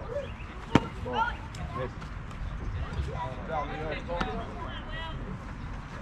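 One sharp impact of a pitched baseball at home plate about a second in, with children and adults calling out intermittently around it.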